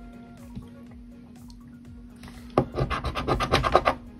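A coin scraping the scratch-off coating of a lottery ticket in rapid strokes, about ten a second, starting a little past halfway through.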